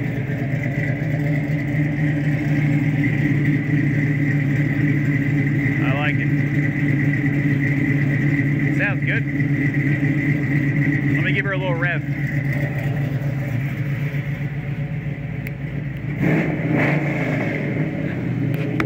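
A 1967 Camaro's fuel-injected 6.0-litre Vortec V8 idling steadily through its full exhaust with a deep, even thump. A few short higher chirping sounds come over it about midway.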